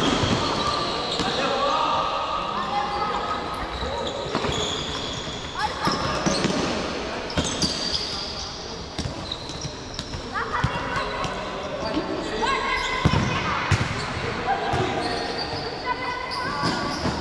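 Futsal game in a sports hall: players' shouts and calls echoing, with the ball's kicks and bounces on the court as scattered sharp knocks.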